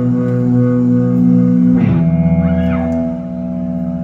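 Live electric guitars and bass through stage amplifiers holding sustained, ringing chords, the closing notes of a punk rock song. They shift to a new held chord with a heavier bass about two seconds in, then ease off slightly.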